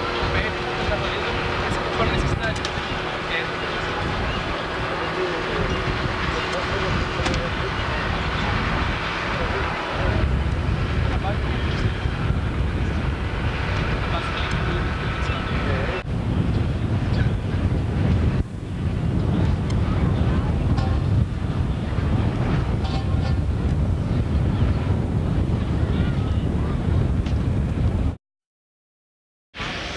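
Engines running steadily, with indistinct voices. The low rumble grows louder about ten seconds in and dips briefly a little after eighteen seconds.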